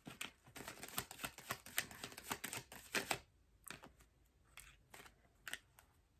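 Tarot cards being shuffled and handled by hand: a fast run of small card clicks for about three seconds, then a few separate clicks as a card is pulled from the deck.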